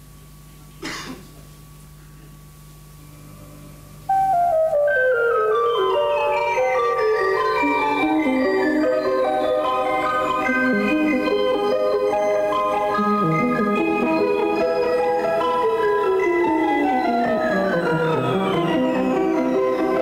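Mixtur-Trautonium playing a canon of stepwise descending lines over three octaves, several voices entering one after another and overlapping. It starts suddenly about four seconds in, after a faint low hum.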